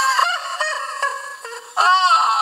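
SpongeBob's high, squawking cartoon voice exclaiming, played back through a TV speaker with no low end, with a sudden loud outburst near the end.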